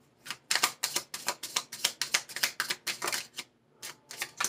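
A tarot deck being shuffled by hand: a quick run of card clicks, about five a second, with a brief pause near the end.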